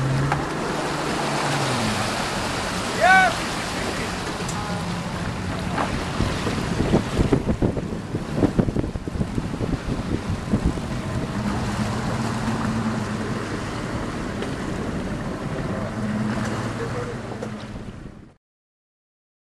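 A boat's engine runs under a steady rush of wind and water; its low hum drops about a second and a half in and rises again later. Wind buffets the microphone in gusts through the middle, and a short voice call rings out about three seconds in.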